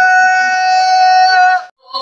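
A boy's voice holding one long sung note into a microphone through a PA system, which cuts off sharply near the end.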